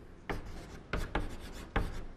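Chalk writing on a blackboard: several short, sharp strokes and taps of the chalk against the board.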